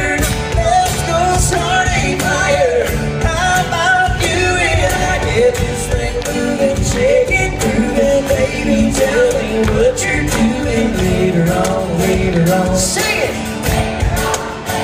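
Live acoustic country band performing: strummed acoustic guitars under a wavering melody line, loud and steady throughout.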